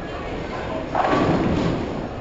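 A single dull thump about a second in, fading over about half a second, over steady background noise.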